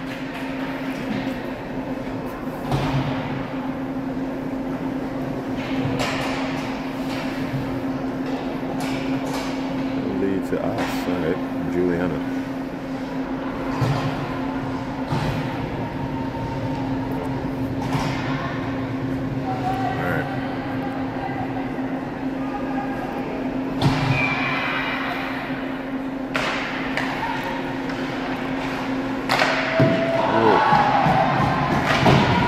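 Ice hockey game sounds in an arena: sticks and puck clacking, with occasional thumps off the boards, the loudest about three-quarters of the way in. Indistinct voices and shouts are heard over a steady low hum.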